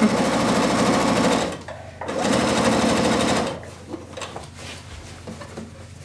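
Electric sewing machine stitching fast in two runs of about a second and a half each, with a short pause between them; it stops about halfway through.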